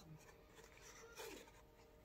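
Near silence, with faint handling noise from a small phone stand being turned and opened in the hand: a brief soft scrape just over a second in.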